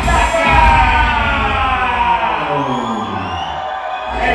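Live hip hop music through a concert PA: the beat drops out about half a second in, and one pitched sound slides steadily down in pitch for about three seconds, like a record slowing to a stop, over crowd noise.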